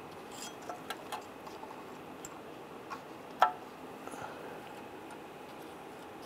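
Small metallic clicks and taps as a parking brake shoe's hold-down spring clip is worked onto its pin, with one sharper click about halfway through.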